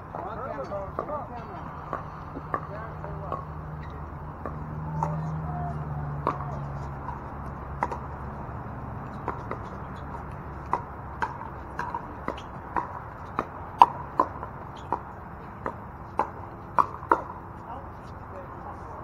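Pickleball paddles hitting a plastic ball in a rally: sharp pops, spaced out at first, then coming quicker, about two a second, in a fast exchange over the last several seconds.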